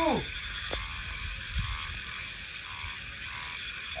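Steady chorus of frogs calling, with a single faint click about a second in.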